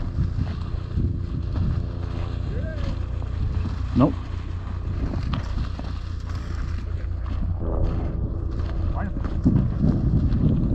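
Steady wind rumbling on the microphone over a constant hiss and rustle of dry cattails being pushed through on foot. A man's short call comes about four seconds in.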